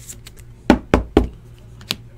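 Three quick knocks on a tabletop about a quarter second apart as a trading card in a plastic top loader is handled, then a single sharper click near the end.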